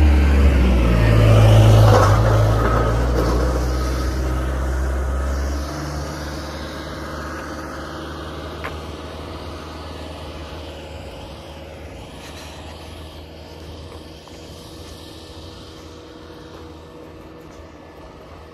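A motor vehicle's engine passing close by on the road, loudest about two seconds in, then fading away as it drives off.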